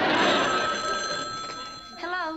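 A corded landline telephone's bell ringing, its tone hanging on after the ring, over studio audience laughter that fades away.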